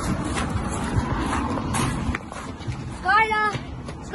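Rough rustling and rumbling noise from people running with the camera, then about three seconds in a child's high-pitched wordless call lasting about half a second.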